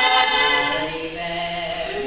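Female a cappella group singing held chords in close harmony; the higher voices fade about a second in, leaving lower sustained notes.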